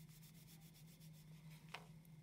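Faint scratching of a wax crayon rubbed back and forth on drawing paper in quick, even strokes, colouring in an area; the strokes fade out about halfway through.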